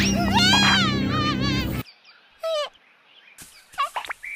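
Animal cries from a jungle soundtrack: a wavering cry over background music that cuts off suddenly a little under two seconds in, then a few short cries that fall in pitch, in near quiet.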